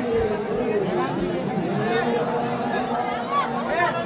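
Dense crowd of many voices calling and chattering over one another, a steady mass of overlapping voices.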